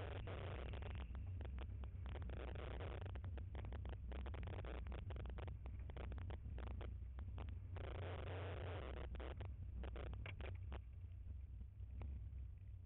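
Subaru boxer engine droning under load, heard from inside the car on a rallycross run over wet dirt, with a dense patter of stones and mud hitting the underbody and wheel wells and bursts of tyre-on-dirt hiss.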